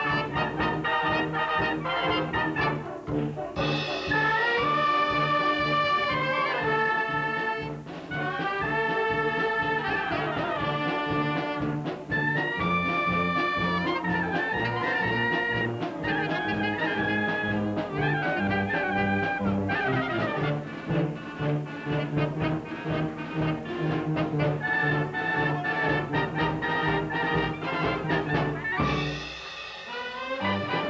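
Brass band playing a paso doble: trumpets and clarinets carrying the tune over sousaphones and drums with a steady beat in the bass. There is a short break near the end.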